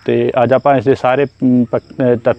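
A man talking, with a faint, steady, high-pitched insect trill from crickets running underneath.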